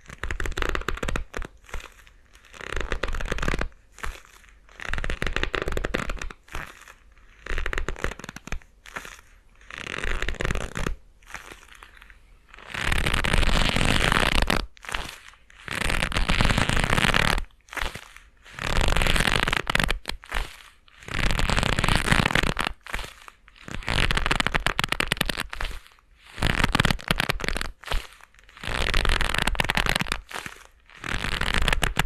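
Leather gloves rubbing and creaking right beside binaural dummy-head microphones: a run of crackly rubs, each about a second long with short pauses between, the rubs growing longer about halfway through.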